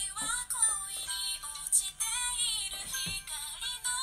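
Pop music with a high-pitched sung vocal line that wavers in pitch.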